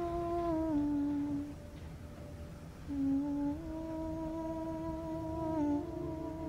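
A woman humming a slow, wordless tune in long held notes: a note that steps down and fades, a pause of about a second and a half, then a low note that rises and holds, dipping briefly near the end.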